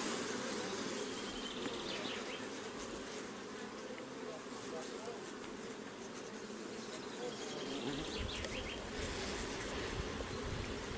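Carniolan honeybees humming steadily over the exposed frames of an opened hive, a continuous buzz of many bees with a few single bees gliding past close by.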